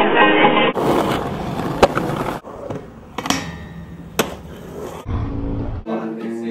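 Street band of trumpet, piano and banjo cut off abruptly less than a second in, then a rough rumbling noise with three sharp knocks, the loudest about two seconds in, and a low rumble near the end.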